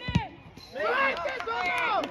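Voices shouting across a football pitch during play, after a single sharp thump just at the start.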